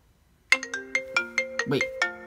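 iPhone ringtone for an incoming call: a melody of bell-like struck notes that starts suddenly about half a second in and keeps repeating.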